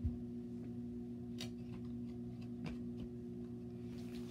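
A low thump as a small object is grabbed off the carpet, then a few light clicks and taps of items being handled and sorted through by hand, over a steady low hum.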